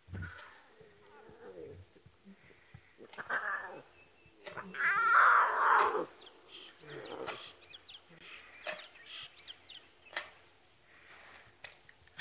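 Lion cubs calling to their mother and one another with soft 'ow' contact calls: a string of short separate calls, the loudest and longest about five seconds in.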